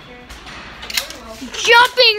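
A person's voice: a loud, drawn-out vocal cry with no words starts near the end, after a brief hiss-like burst about a second in.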